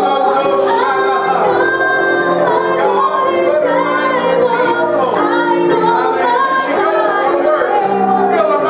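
A woman singing a worship song over long held chords, continuous throughout.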